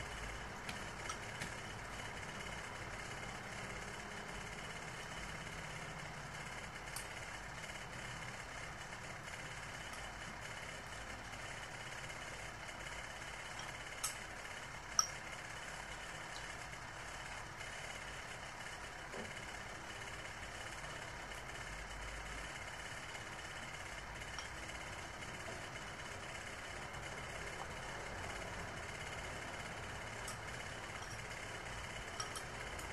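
Steady background hum, with two sharp clinks of a spoon against a ceramic bowl about halfway through, as a toddler feeds herself.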